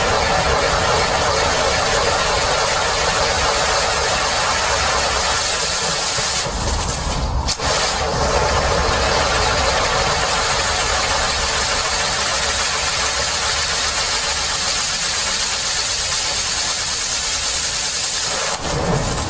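Firework fountain (the 'Reliant') gushing sparks with a loud, steady rushing hiss, broken briefly by a short dip and a sharp crack about seven seconds in.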